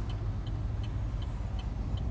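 A car's turn-signal indicator ticking evenly, about three ticks a second, over the low drone of road and engine noise inside a Chevy Spark's cabin as the car is about to turn.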